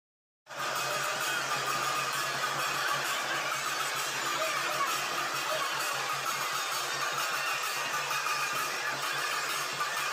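The steady din of a huge outdoor crowd with music mixed in, cutting in abruptly about half a second in after silence, with a constant low hum underneath.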